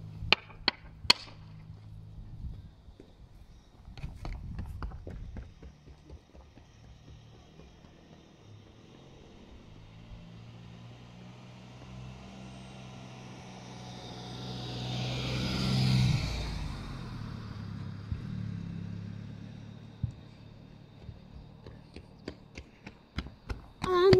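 A car drives along the road past the low camera: low engine hum and tyre noise building to a peak about two-thirds of the way through, then fading. Near the start, a few sharp knocks of a hurley hitting the ball.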